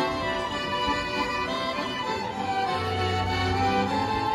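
Street ensemble of violins, an accordion and a cello playing music live, the bowed violins and accordion holding sustained notes at a steady level.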